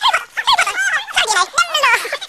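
High-pitched vocal sounds: a rapid run of short squeals and yelps, each quickly rising and falling in pitch.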